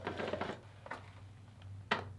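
Plastic sump of a GE whole-home water filter being threaded onto its head by hand: faint scrapes and small plastic clicks, with one sharper click near the end.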